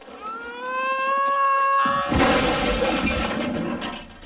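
A cartoon scream sound effect held for about two seconds, rising slightly in pitch, then a loud crash of shattering glass lasting almost two seconds.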